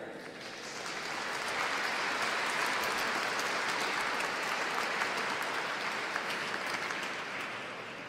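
Audience applauding, building over the first two seconds and slowly dying away near the end.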